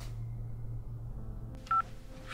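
A steady low hum, then near the end a single short phone keypad tone as a number is dialled on a mobile phone.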